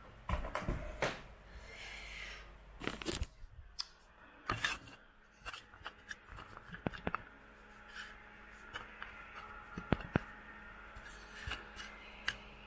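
Handling noise from a camera being picked up and moved by hand: irregular rubbing, rustling and sharp clicks and knocks.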